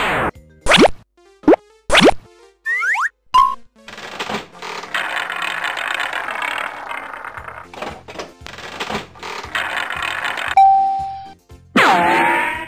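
Cartoon sound effects over children's music: a few short springy boings, then a longer busy stretch while a cartoon prize wheel spins, ending in a short steady ding near the end.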